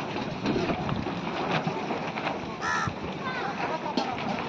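A crow caws once, a short harsh call about two and a half seconds in, over background chatter of people.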